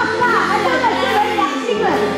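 A man and a woman singing a duet through the stage PA over a live band holding sustained chords.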